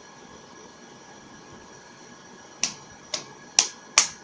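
Four sharp slaps of hands striking each other in the second half, about half a second apart, over a faint steady hiss with a thin high tone.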